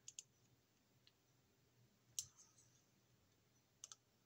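A handful of faint, sharp clicks from fingers and a screwdriver working a thin wire under a terminal screw on a plastic thermostat base plate, the sharpest just past halfway.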